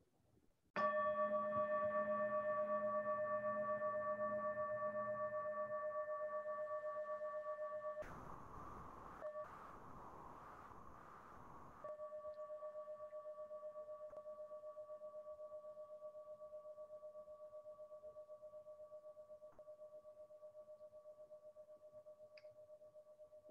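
Meditation singing bowl struck once, about a second in, then ringing on with a wavering hum and slowly fading, marking the start of a meditation period. In the middle, a few seconds of rushing noise briefly cover the ring.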